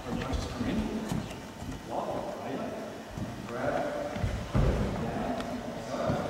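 Low voices in a large echoing hall, with a sudden thud about four and a half seconds in as a karate training partner is taken down onto the wooden floor.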